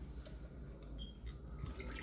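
Vinegar poured from a liquid measuring cup into a glass jar, heard as a faint trickle with a few small drips.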